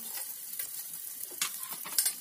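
Chopped garlic sizzling in rendered pork fat in a stainless steel saucepan, stirred with a metal spoon that scrapes the pan. A couple of sharp clinks of spoon on pan come in the second half, the loudest right at the end.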